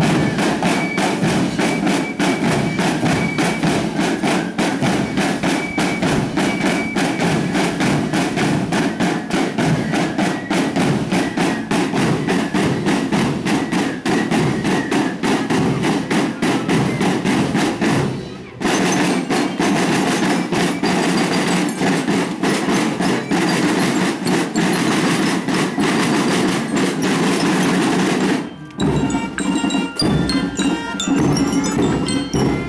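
School marching band playing a percussion-led march: fast, steady drumming with a bell-like mallet instrument carrying a thin melody. The playing breaks off briefly about eighteen seconds in and again near the end.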